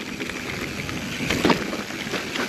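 Mountain bike rolling fast down a rough, rocky dirt trail: steady tyre and rattle noise mixed with wind rush on the microphone, with a few sharper knocks about one and a half seconds in as the bike hits rocks.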